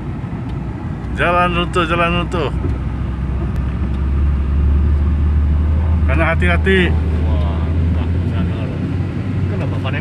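Car running along a wet road, heard from inside the cabin: a steady low engine and tyre noise, with a deeper, louder drone from about four seconds in. Voices speak briefly twice.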